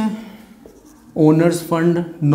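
Marker pen scratching on a whiteboard, faint, for about the first second. Then a man's voice speaking, louder, from a little past one second in.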